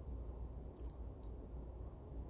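A few faint, short clicks about a second in, over a low steady rumble.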